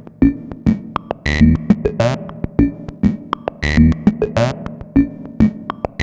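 Serge modular synthesizer patch played through the Variable Q VCF's bandpass output: a looping sequence of pinged, percussive filter hits, clicks and fast chirping sweeps, repeating about every two and a third seconds.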